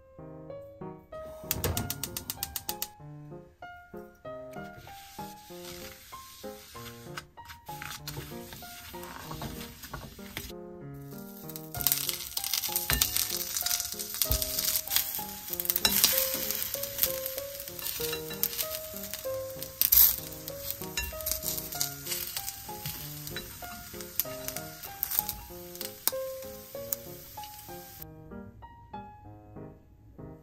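Rice patties (yaki onigiri) sizzling as they fry in a frying pan, starting about halfway through and continuing with a crackling hiss.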